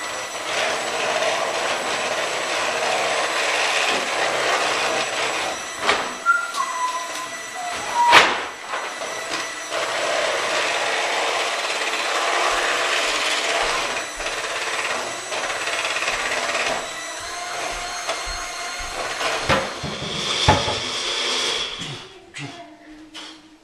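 Electric hand mixer running steadily as it beats pancake batter in a bowl, with a few sharp knocks, the loudest about eight seconds in. The motor cuts off just before the end.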